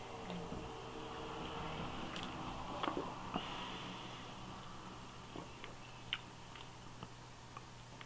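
Quiet sip and swallows of lager from a glass tankard, then faint mouth and lip sounds while it is tasted, with a few small clicks, over a steady low hum.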